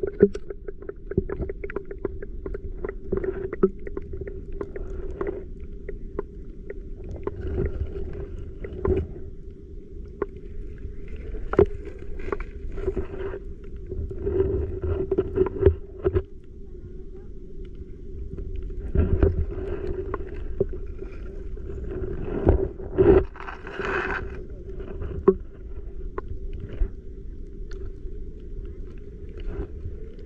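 Underwater sound picked up by a submerged camera: a steady hum runs under scattered clicks and knocks, with several short bursts of rushing water noise.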